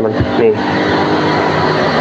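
A motor engine running at a steady speed, giving an even hum.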